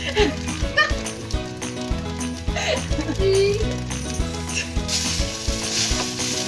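Rice frying in a hot wok, a steady sizzle that grows louder near the end as stirring begins. Background music with a steady beat plays underneath.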